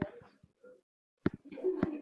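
Classroom sounds: low murmured voices and a few sharp knocks or taps, with a brief drop to dead silence about half a second in.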